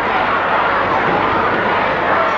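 Football crowd noise in the stands, a steady, loud din of many voices heard through an old television broadcast.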